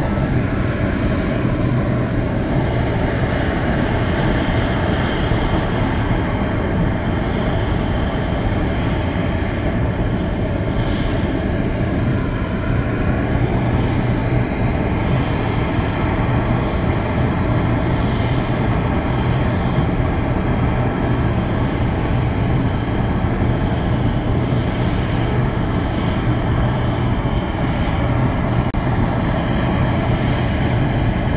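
Homemade waste oil burner running at full fire into a glass observation combustion chamber: a loud, steady rush of burning oil and air with a constant low hum underneath.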